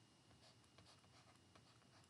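Near silence, with faint ticks of a pen writing on a digital writing tablet.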